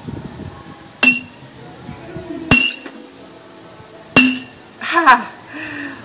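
Rubber mallet striking the top of a water-filled glass bottle three times, about a second and a half apart; each blow is a sharp clink with a brief glassy ring, and the bottle holds.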